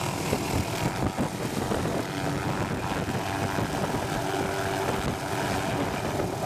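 MD 500 light helicopter running at full rotor speed and lifting off, a loud steady rotor chop with engine whine underneath.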